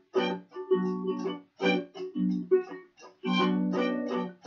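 Harmonica played in short chords, about two a second, over a strummed acoustic guitar.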